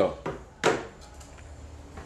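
A sharp knock on a layer of ice on frozen beer in a plastic fermenting bucket, one loud strike about two-thirds of a second in, with a fainter click before it and a few light ticks after. The beer has frozen over in the freezer.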